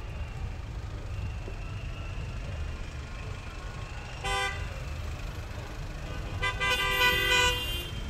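A car horn gives a short toot about four seconds in, then a longer blast of about a second near the end, over a steady low rumble of road traffic.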